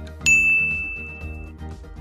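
A single bright ding, the answer-reveal chime sound effect, struck about a quarter second in and ringing out for just over a second, over background music.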